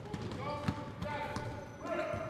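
A basketball bouncing on a hard floor a few times, with faint voices in the background.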